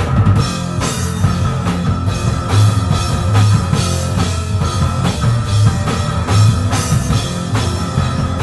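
Live stoner-rock trio playing an instrumental stretch: fuzz-distorted electric guitar and bass over a drum kit, with steady bass-drum, snare and cymbal hits.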